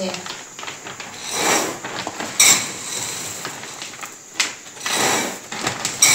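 Packing dried soybeans by hand: a clear plastic tub and woven plastic sacks of beans being handled, with rustling swells as the beans and sacks shift and two sharp plastic knocks.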